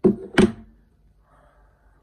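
Two sharp knocks about half a second apart, hard plastic on a hard surface, as a Nutribullet blender cup and its unscrewed blade base are handled and set down.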